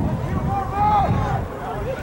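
Distant voices calling out across a soccer field in a few long shouts, over a low wind rumble on the microphone.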